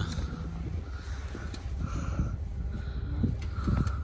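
Outdoor rumble of wind on the microphone, with footsteps scuffing through soft sand and a few light knocks, and a faint short high tone recurring about once a second.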